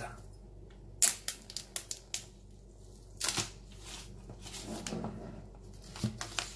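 Plastic shrink-wrap on a phone box being peeled off by hand, crinkling and tearing in a string of sharp crackles spread irregularly over several seconds.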